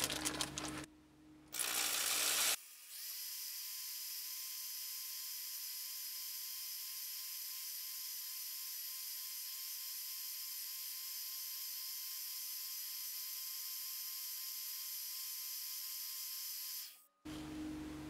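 Motor-driven buffing wheel spinning as a small 24k gold ring is polished against it. After a short burst of noise near the start, it gives a steady high hiss with a faint whine, which cuts off shortly before the end.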